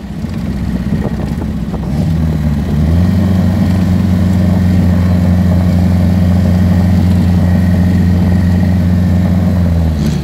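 Datsun Fairlady roadster's R16 inline-four engine pulling along at steady revs: its note climbs a little and grows louder about two to three seconds in, then holds one even pitch.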